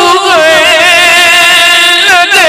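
A man's voice singing a naat, drawing out a long, wavering, ornamented note with a brief catch of breath just after the start.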